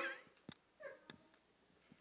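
A mostly quiet pause with a faint, short vocal sound a little under a second in, with a soft click just before it and another just after.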